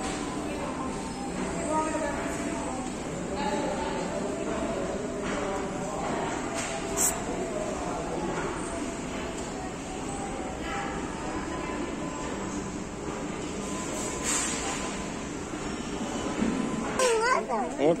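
Steady rumble of a moving walkway under a background of indistinct voices in a busy public space, with a voice speaking near the end.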